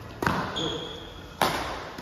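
Badminton rackets striking a shuttlecock twice, about a second apart, with the hits echoing in a large hall. A short high squeak sounds just after the first hit.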